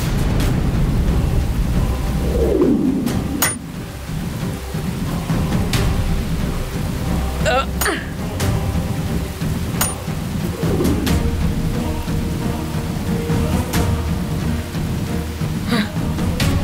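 Heavy rain falling steadily with deep thunder rumbling, mixed with dramatic background music. Several sudden sharp cracks come a few seconds apart.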